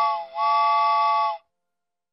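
Cartoon steam-train whistle sounding a chord of several tones: the tail of a short toot, then a longer toot of about a second that cuts off suddenly.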